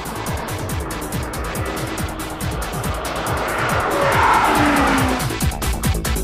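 A Honda S2000 roadster driven through a corner at speed, tyres squealing, its sound swelling to a peak about four to five seconds in and then fading. Electronic music with a steady beat plays over it throughout.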